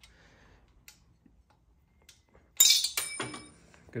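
After a quiet stretch, a sharp metallic clink rings briefly about two and a half seconds in, followed by a few smaller clatters: metal hardware or a tool knocking against metal.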